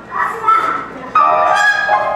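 Trumpet played free-jazz style with rough, honking notes that bend in pitch. The loudest note enters suddenly about a second in, with piano behind it.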